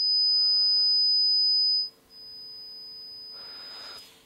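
A high-pitched pure test tone played twice at the same pitch, first loud for about two seconds, then after a short gap much softer for about two seconds. It is a pitch-perception demo: the quieter tone seems slightly lower although it is the same tone.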